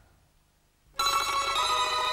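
Near silence, then about a second in a studio band starts its song with a sudden, steady held chord of many sustained notes.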